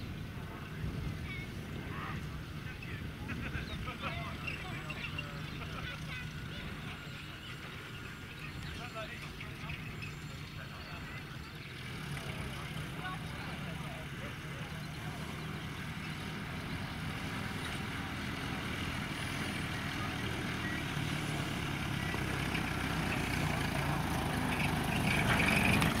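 A 1943 WWII jeep's four-cylinder engine running steadily as it drives slowly across grass, growing louder as it comes closer.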